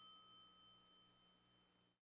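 Near silence: a faint trailing sound fades out within the first half second, leaving only very faint steady high tones.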